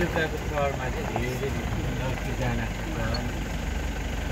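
A vehicle engine idling steadily with a low hum, under people talking quietly.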